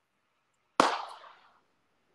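A single sharp crack about a second in, fading away over about half a second.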